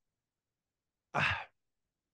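Silence, then a single short breathy sigh from a man a little over a second in.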